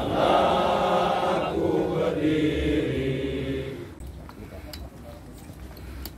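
A group of men chanting together in unison, the chant ending about four seconds in.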